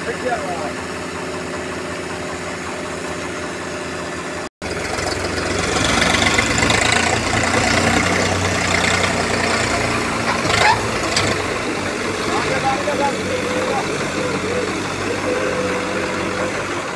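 Tractor diesel engine idling steadily, then, after a cut about four and a half seconds in, running louder and rougher at higher revs.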